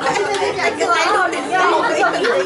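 Several people talking at once: overlapping chatter in a large room.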